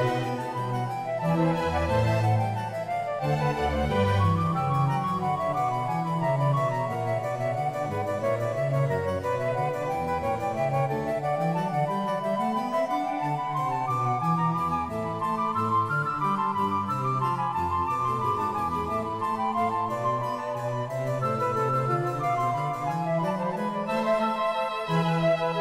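Instrumental background music: a melody over a steady bass line, with no speech.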